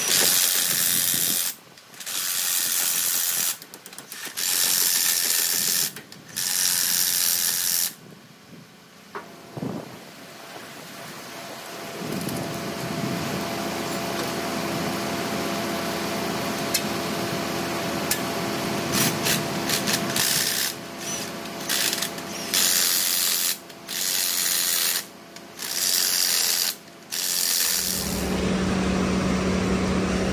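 Cordless impact wrench running in repeated bursts of a second or two, tightening the bolts of new bottom track rollers on a dozer's roller frame. From about twelve seconds in, a steady hum runs underneath the bursts.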